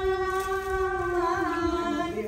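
Women singing a cappella, drawing out one long held note that wavers slightly near the end.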